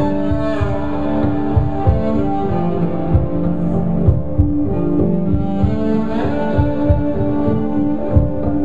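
Live-looped bass music without vocals: a bowed upright bass holding long notes over a fretless electric bass line and a looped low beat.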